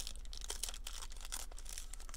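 Foil wrapper of a 2018 Panini Contenders Draft Picks card pack crinkling and tearing as it is ripped open by hand: a dense run of irregular crackles.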